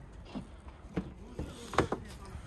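A few soft knocks and clicks, the loudest near the end, as a car's rear door is opened and the camera is handled beside the car.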